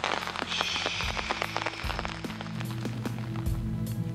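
Rain falling, with scattered drops ticking, as background music comes in under it with low held notes from about halfway through.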